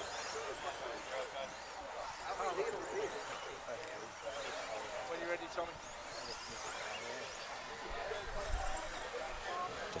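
Outdoor trackside ambience of distant, indistinct voices at a moderate, even level, with no single loud event.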